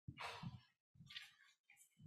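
Near silence: room tone with a few faint, brief sounds.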